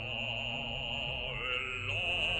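Operatic singing with orchestra: a solo voice with wide vibrato holds notes over sustained accompaniment.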